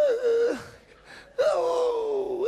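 A man's wordless high-pitched falsetto vocalising: a long drawn-out tone that slides and breaks off about half a second in, then after a short gap another long, gliding tone starts.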